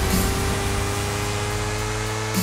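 Uptempo hardcore electronic music in a breakdown: held synth tones over a hiss-like noise wash, with the kick drum dropped out.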